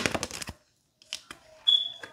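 Tarot cards shuffled by hand: a quick run of crisp card flicks that stops about half a second in, then a couple of soft taps. Near the end, one brief high-pitched beep.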